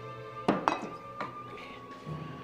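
Three short, sharp clinks and knocks of a hard object on a hard surface, the first two close together about half a second in and a softer one just past a second, over steady soft background music.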